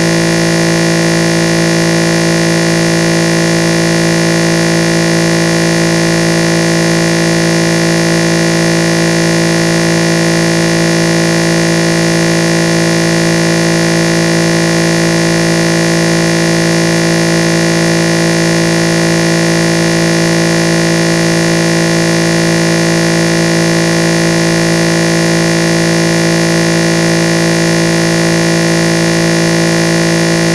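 A loud, perfectly steady electronic buzz made of many fixed tones at once, with no change in pitch or level.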